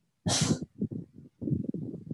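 A single short, sharp sneeze-like burst of noise about a quarter second in, followed by low, muffled irregular thumps and murmur.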